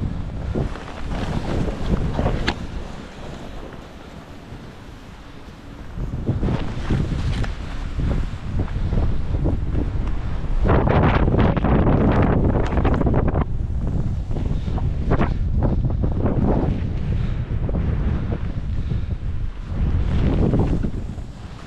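Wind rushing over the microphone while skis scrape and chatter through chopped-up snow in a steady run of turns, louder about halfway through.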